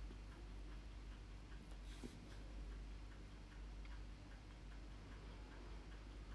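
Quiet room tone: a low steady hum with faint scattered light ticks, a slightly stronger one about two seconds in.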